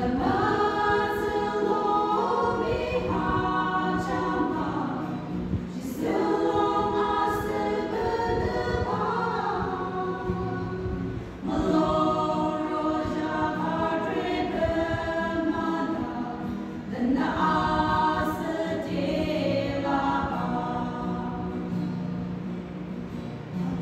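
A group of women singing a gospel song together, in sung phrases of about five to six seconds with short breaks for breath between them.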